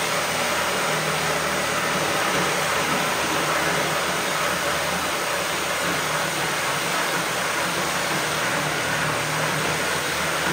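Corded reciprocating saw running steadily, its blade cutting through a wooden board.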